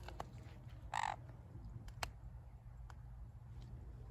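A sun conure gives one short, harsh squawk about a second in. A few faint clicks follow over a steady low rumble.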